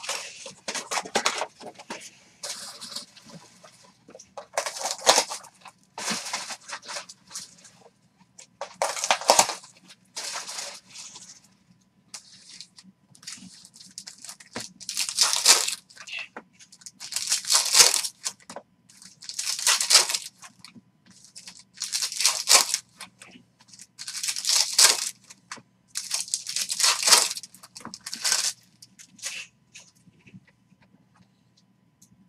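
Foil trading-card pack wrappers being torn open and crinkled by hand. Irregular crinkling and handling noise at first, then a short burst of tearing and crinkling about every two seconds through the second half.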